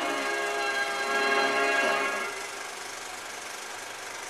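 The film soundtrack's closing chord is held for about two seconds and then fades. A steady, fainter mechanical running noise from the film projector is left, continuing as the film runs out to a blank screen.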